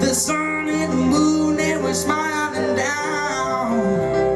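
Live singing accompanied by a plucked upright double bass.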